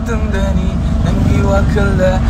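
Steady low rumble of road and engine noise inside a moving car's cabin, with a person's voice over it.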